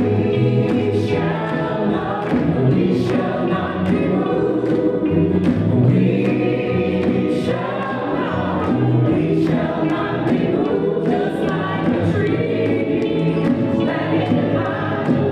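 Music: a choir singing with instrumental accompaniment and a steady beat.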